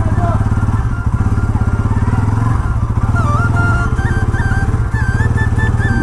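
A Bajaj Pulsar NS200's single-cylinder engine idling steadily while the bike stands still. Background music with a melody plays over it.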